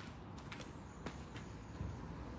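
Faint footsteps of rubber slide sandals on asphalt: a few soft, irregular scuffs and clicks over a low steady background.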